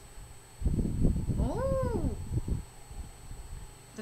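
One short pitched call that rises and falls, about a second and a half in, over a couple of seconds of low rumbling noise.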